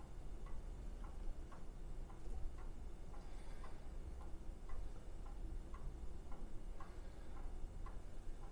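Thick blended milk creamer poured in a slow stream from a glass blender jar into a plastic bottle, faintly. A steady light ticking runs through it at about two ticks a second.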